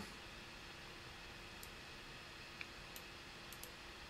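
Near silence: faint room tone with a few scattered, faint clicks of a computer mouse.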